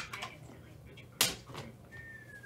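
Sharp clicks from gloved hands handling a trading card: a small click just after the start and a louder one about a second and a quarter in.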